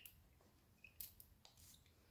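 Near silence: room tone, with a few faint, brief hissy noises about a second in.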